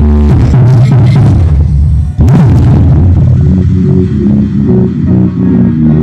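Electronic dance music played very loud through a car-audio speaker wall of Hard Power woofers and horn drivers, driven by Soundigital amplifiers, heavy in bass. The music breaks off briefly about two seconds in, then returns with a steady pulsing bass beat.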